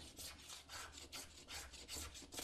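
A hand tool rubbing or filing a dark wooden strip for a guitar neck, in fast short scratchy strokes, about five a second.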